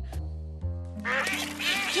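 A short musical transition passage, then, from about halfway through, a flurry of cartoon duckling quacks over a held music note.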